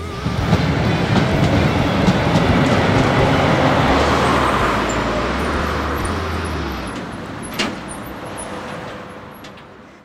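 A city tram passing close by. Its rumble comes in suddenly, stays loud for the first several seconds, then fades away, with one sharp click about seven and a half seconds in.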